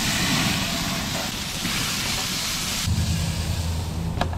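Steaks sizzling on a hot grill over flaring flames, a steady loud hiss, as tongs turn them. About three seconds in the sizzle stops and a steady low hum remains.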